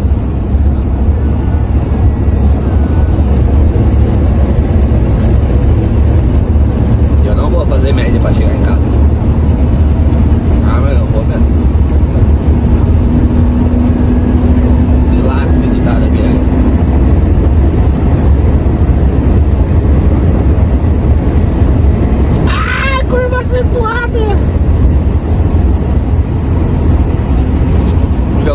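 Volkswagen truck's diesel engine and road noise droning steadily, heard from inside the cab at highway cruising speed. Short stretches of voice-like sound come in the middle and near the end.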